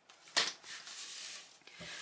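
A sharp click as a sewing clip is adjusted on the fabric, then soft fabric rustling as the clipped piece is laid flat and smoothed by hand.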